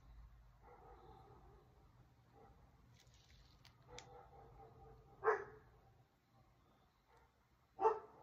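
Two short dog barks, one about five seconds in and another near the end.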